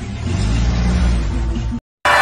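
A car engine running with a low rumble that swells in the first half second, then cuts off abruptly just before the end.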